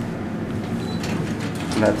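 Traction elevator car with a steady low hum as it reaches the lobby, then the door operator opening the doors, with mechanical clicks and rattling from about a second in.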